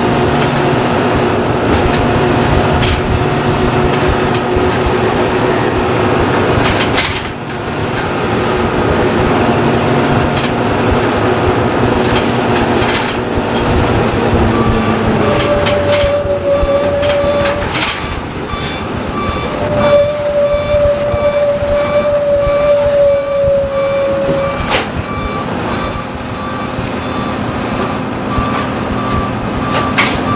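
1993 Orion V transit bus's Detroit Diesel 6V92 two-stroke diesel engine running under way, heard from on board. Its pitch drops about halfway through as the bus slows, and a steady high tone then sounds twice for a few seconds each.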